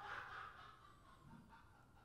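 Near silence: a faint, muffled sound fades out about half a second in, then only room tone.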